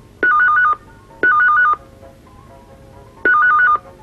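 Telephone ringing with an electronic warble, in the double-ring cadence: two short bursts about a second apart, a pause, then the next pair begins.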